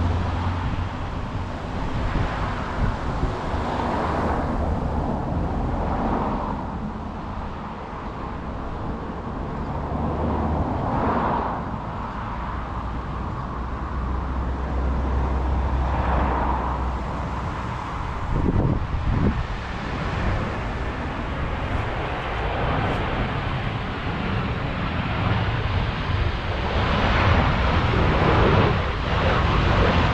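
Wind gusting on the microphone with a low rumble, swelling every few seconds, while a twin-engine jet airliner on approach grows louder near the end.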